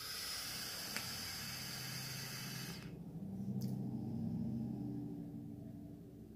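A long draw on a vape box mod: about three seconds of steady hissing as air is pulled through the atomizer while the coil fires, stopping abruptly. Then a softer, lower exhale of the vapour lasting a couple of seconds and fading out.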